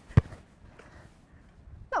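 A football boot striking a football once in a shot: a single sharp thud just after the start.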